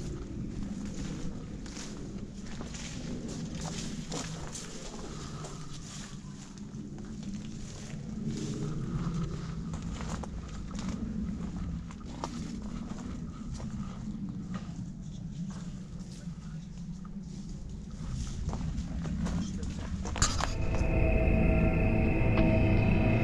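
Footsteps crunching over leaf litter and twigs on an overgrown path, with irregular crackles and rustles and the low rumble of a handheld camera on the move. Eerie music comes in near the end.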